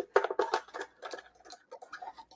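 Small plastic die-cutting machine being set down and handled on a desk, with a die-and-paper sandwich slid into its rollers: a string of irregular clicks and knocks, densest in the first second, then lighter taps.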